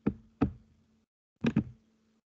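Computer mouse clicking, picked up by the microphone as four sharp clicks: one at the start, one about half a second later, and a quick pair about a second and a half in. A faint steady hum sounds under the clicks.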